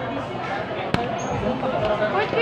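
Indistinct voices and chatter, with a single sharp knock about a second in.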